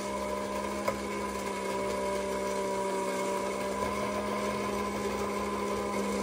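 The battery-operated 1950s tin-litho Fishing Bears savings bank running: a steady mechanical hum from its battery-driven mechanism, with one small click about a second in.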